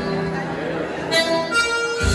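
Live Irish céilí band music for set dancing, with held melody notes that change pitch. It is the lead-in to the next figure of the set.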